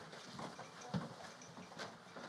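Faint footsteps of a person walking: a few soft thuds about a second apart.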